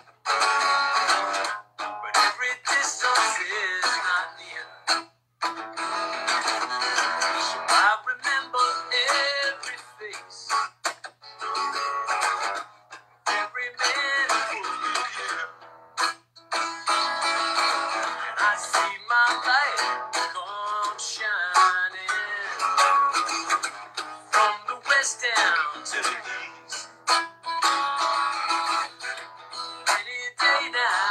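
Acoustic guitar strummed with a harmonica played over it from a neck rack, the harmonica line bending and wavering in phrases with short breaks.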